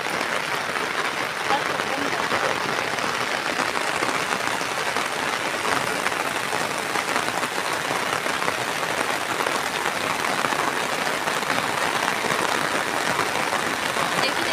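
Heavy rain falling steadily: a loud, even hiss that holds without a break.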